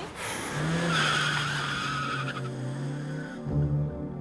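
A car pulling away hard, tyres squealing for about two seconds over the engine. Music comes in near the end.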